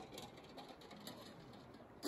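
Near silence: faint outdoor background hiss with a few faint ticks early on and about a second in.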